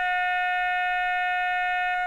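Horn sound from the digital sound decoder in a Märklin H0 model railway cab car, played through the model's small speaker: one steady, even note held for about two seconds, fading out just after.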